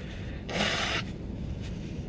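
A man blows his nose into a paper towel: one short rush of breathy noise about half a second in. Behind it is the steady low road rumble of the moving truck's cabin.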